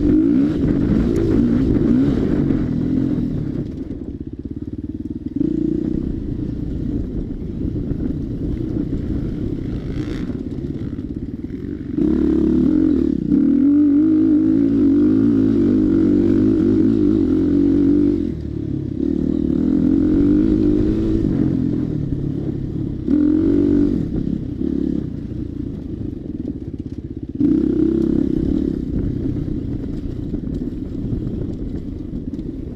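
Dirt bike engine heard from on board. The rider opens the throttle hard in surges of a few seconds and backs off between them, so the engine note keeps rising and dropping.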